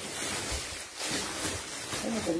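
Rustling of plastic-wrapped clothes being handled, with a soft low knock about half a second in.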